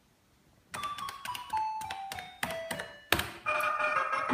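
Coin-operated light-roulette slot machine playing its electronic sound effects: a run of short beeps that step down in pitch, a sharp click about three seconds in, then its jingle music starting.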